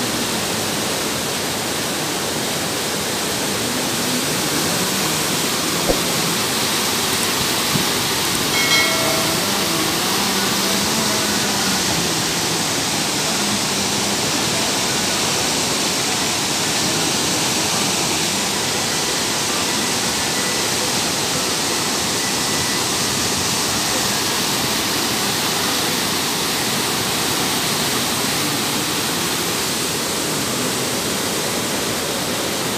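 A normally dry rocky ravine in flood: muddy floodwater rushing over rocks in a steady, loud, unbroken rush.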